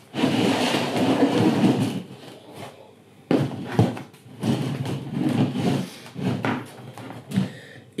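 Plastic plant pots and a plastic tray being handled and slid about on a table: scraping and rustling for the first two seconds, then a few sharp plastic knocks and more shuffling of pots.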